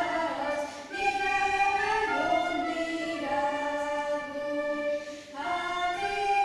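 Children singing with recorders and a flute, a slow melody of held notes that change about every second or two.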